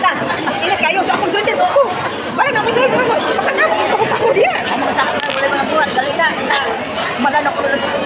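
Chatter of several voices talking over one another, steady throughout.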